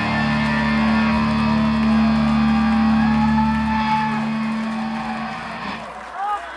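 A rock band's closing chord ringing out: electric guitar and bass hold one steady low chord that fades away about five seconds in, with crowd cheering rising near the end.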